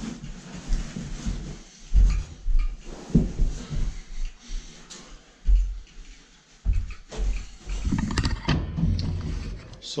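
Old carpet being rolled up and shifted on the floor by hand: irregular dull thuds and rustles. Footsteps follow later on.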